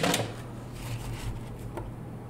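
Soft, faint handling sounds as cut potato pieces are placed into a parchment-lined baking dish: a few light taps and paper rustles over a steady low hum.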